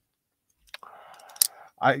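Folding pocketknife being handled: a few light clicks over a soft hiss, then one sharp click about one and a half seconds in.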